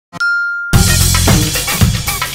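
Intro jingle: a click and a single bright ding, then about two-thirds of a second in, upbeat music with a punchy drum beat and bass starts.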